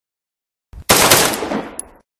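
Gunshot sound effect for a sniper-themed logo, the shot striking glass: a sudden loud report about a second in that dies away, then a short high click near the end.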